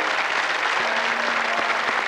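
Studio audience applauding at the end of a song, with faint sustained notes of the backing music underneath.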